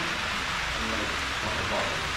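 A steady, even hiss of background noise with faint voices behind it.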